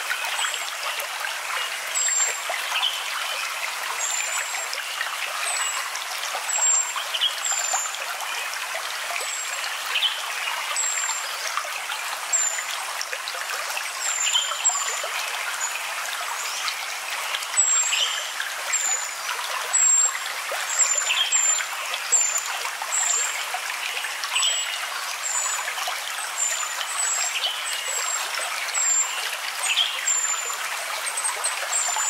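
Steady rush of flowing water, like a trickling stream, with short high chirps recurring every second or so.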